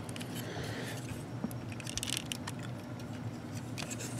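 Plastic parts of a transforming robot action figure clicking and scraping as it is handled and folded, several small clicks with short scrapes, over a steady low hum.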